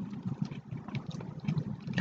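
Uneven low rumble of room or microphone noise, with a few faint soft clicks of a mouth chewing a raw oyster.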